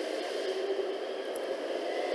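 Steady background hiss with no speech, the recording's noise floor between spoken phrases.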